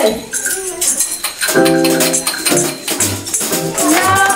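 Hand percussion played in quick, jingling shaken strokes, like a tambourine. A short held musical note sounds about halfway through.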